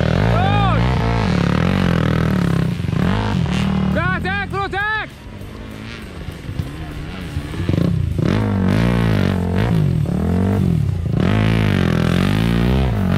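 Trail motorcycle engine revving hard on a steep dirt hill climb, its pitch rising and falling over and over as the throttle is worked. It drops away about five seconds in and comes back louder from about eight seconds.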